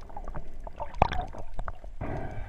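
Underwater sound picked up through a GoPro HERO3 Black's waterproof housing: a muffled low rumble with scattered irregular clicks and a few short gurgles.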